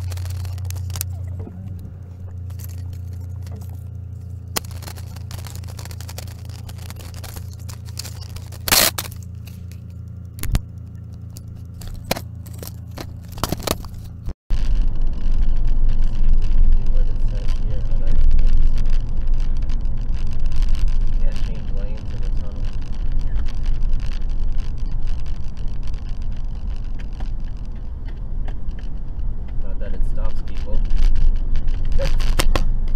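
Cabin sound recorded by a dashcam inside a car: a steady low engine hum with a few sharp clicks and knocks. About halfway it cuts suddenly to louder rumbling road and tyre noise of a car driving through a road tunnel.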